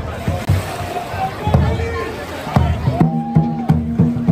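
Dragon boat drum beaten in a steady rhythm, about three beats a second, under crowd voices. A held pitched note comes in about three seconds in.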